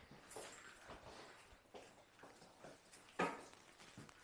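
Faint footsteps on a hard wooden shop floor with light scattered taps, and a single louder knock about three seconds in.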